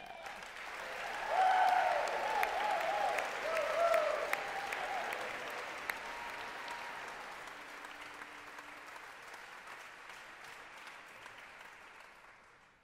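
Audience applauding as a performer walks on, with a few cheers in the loudest stretch within the first few seconds; the applause then slowly dies away.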